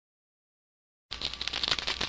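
Dead silence, then about a second in a rapid, dry crackling of many quick ticks starts: the sound effect of an animated logo outro.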